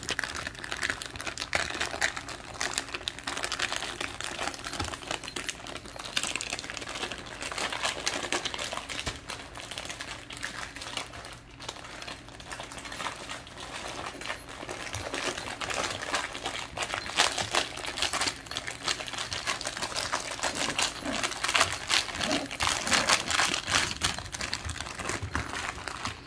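A plastic package crinkling and rustling in a continuous stream of fine crackles as several Scottish terriers paw and chew at it, trying to tear it open. It gets busier in the second half.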